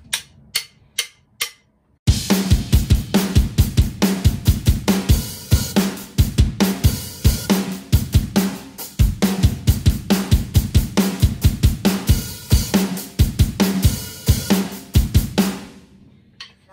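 Electronic drum kit playing a solo rock groove of kick, snare and hi-hat, after a count-in of a few clicks. The groove stops just before the end.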